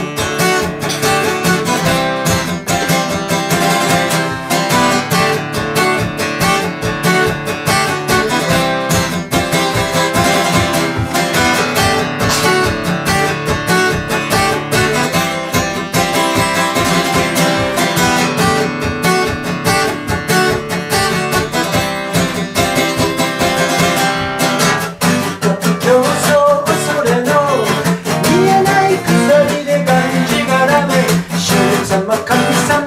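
Acoustic guitar strummed in a steady rhythm as the intro of a song. A man's singing voice comes in over it near the end.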